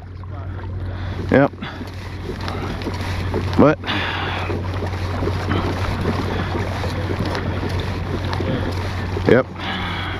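A kayak's electric trolling motor runs with a steady low hum, under a constant hiss of wind and water on the microphone. A short voice sound cuts in three times.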